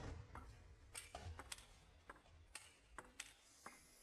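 Faint clicks of a table tennis rally: the ball striking the rackets and bouncing on the table, about eight sharp clicks at uneven intervals.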